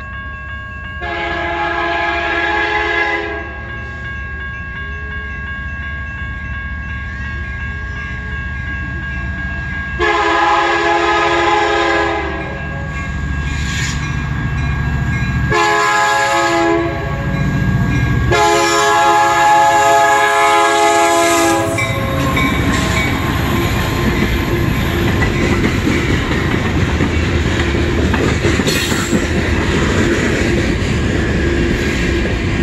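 A diesel freight locomotive's horn sounds the grade-crossing signal, long, long, short, long, over the steady ringing of the crossing-signal bells. After the last blast the train reaches the crossing and freight cars roll past with a rumble and clatter of wheels on rail joints.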